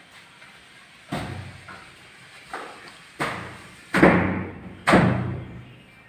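A heavy wooden door leaf thudding against its frame five times as it is pushed and worked into place, the blows growing louder, the last two the strongest, each followed by a short echo.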